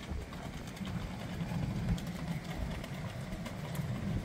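Strong wind blowing over the microphone: a steady low rumbling buffet that rises and falls slightly.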